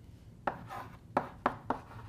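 Chalk writing on a blackboard: four sharp taps as the chalk strikes the board, the first about half a second in and followed by a short scratchy stroke, the last three close together.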